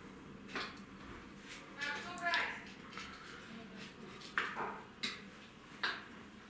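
Faint, indistinct voices in a small room, with one short high-pitched vocal sound about two seconds in and a few brief sharp clicks later.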